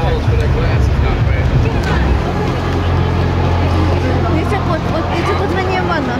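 Indistinct voices with a steady low hum underneath; the hum grows stronger about two seconds in.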